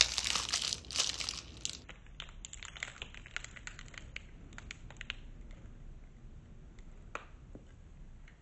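Foil energy-bar wrapper crinkling and tearing as it is opened, loudest in the first couple of seconds. After that come scattered, softer crackles and clicks as the wrapper is handled while the bar is eaten.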